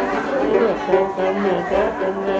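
A man's voice chanting a Tày then song, the pitch bending and sliding in a half-sung, half-spoken line, over plucked notes of a đàn tính gourd lute. A low note is held for about half a second near the end.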